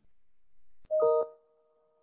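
Audio gap with a faint hiss, then a click and a brief electronic chime of a few steady tones sounding together for about half a second, starting about a second in.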